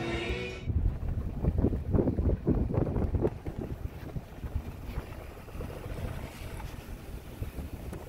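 Wind buffeting the microphone outdoors: an uneven, gusty low rumble, strongest for the first few seconds and then easing.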